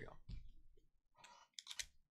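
Foil trading-card pack wrapper crinkling and crackling in the hands as it is handled and torn open, heard as a few faint scattered clicks and crackles.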